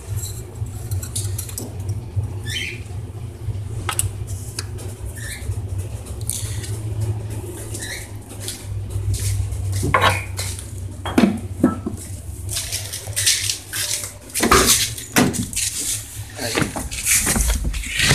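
Handling noises: scattered clinks and knocks with stretches of rustling, over a steady low rumble.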